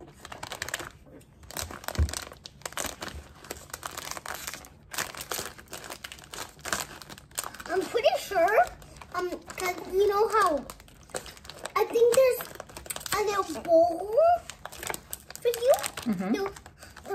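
Plastic packaging of a sushi candy kit crinkling as it is handled and cut open with scissors, in a rapid run of crackles over the first several seconds. A voice without clear words takes over for the second half.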